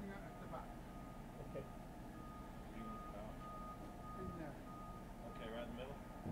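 Faint, distant voices of people talking, over a steady low rumble. A thin, steady high tone runs through most of it.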